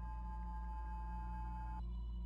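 Faint, steady ringing tones over a low hum; some of the higher tones drop away near the end.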